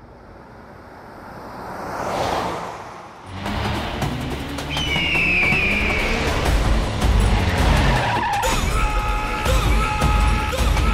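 A car speeding in with a drawn-out tyre squeal of skidding about five seconds in, laid over dramatic background music. A whoosh swells about two seconds in.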